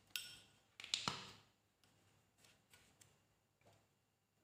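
A spoon clinking against a ceramic bowl: a sharp clink at the start and a louder one about a second in, each ringing briefly, then a few faint light taps.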